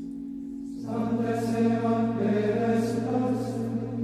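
Choir singing a chant over a steady low held drone; the voices swell in about a second in.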